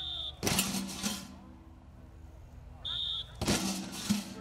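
Two short, shrill blasts on a coach's whistle, about three seconds apart. Each is followed a moment later by the crash of linemen in shoulder pads driving into a padded blocking sled.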